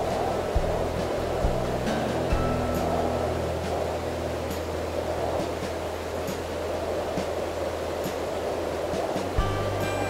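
Background music with low sustained notes over the steady rush of wind-churned water in a lock chamber.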